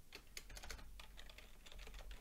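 Faint typing on a computer keyboard: a quick run of key clicks as code is entered.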